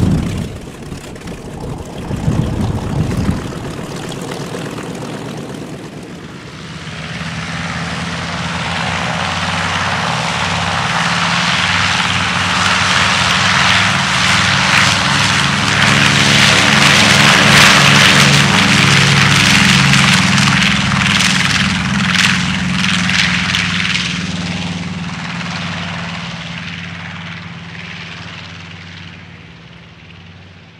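The twin radial engines of a PBJ-1J (Marine B-25 Mitchell) 'Devil Dog' go to takeoff power for its run down the runway. The sound grows from about six seconds in and is loudest as the bomber passes, about two-thirds of the way through. It then fades steadily as the aircraft moves away.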